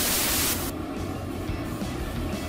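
A burst of loud static-like hiss, a glitch transition effect, that drops away about two-thirds of a second in, leaving a quieter, rough noisy music bed with irregular low pulses.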